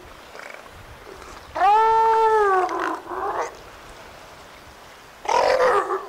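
Juvenile northern elephant seal calling: one long, clear call that rises and then falls in pitch, lasting about a second. A short, rougher call follows right after it, and another rough call comes near the end.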